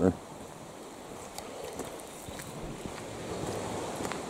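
Steady outdoor background of wind and distant sea, with a few faint ticks.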